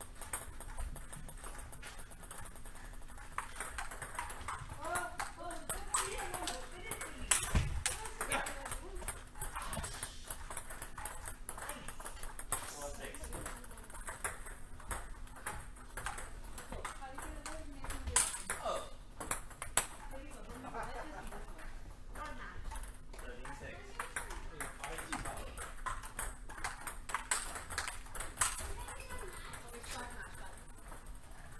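Table tennis rally: the ball clicks off the paddles and the table again and again, with a couple of louder knocks, over voices chatting in the hall.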